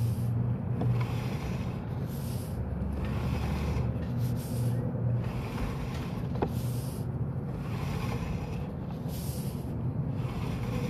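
A motor or engine running steadily with a low hum, with patches of hiss coming and going every second or two.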